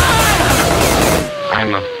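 Electronic dance music: a heavy held bass note under a long, slowly falling tone, with the high end cutting out about a second and a half in.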